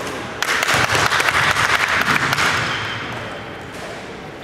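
A small group of people clapping, starting about half a second in and dying away over the next two to three seconds.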